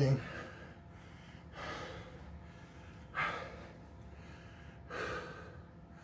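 A man breathing hard from exercise: three heavy breaths about a second and a half apart, the middle one the loudest and sharpest.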